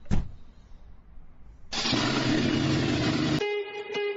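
A short thump, then a loud noisy blast with a low hum underneath, lasting about a second and a half and cutting off sharply as guitar music begins near the end.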